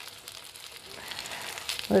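Corn fritters frying in shallow oil in an electric skillet: a soft, steady sizzle.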